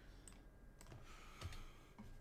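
Faint, scattered clicks of computer keyboard keys being pressed.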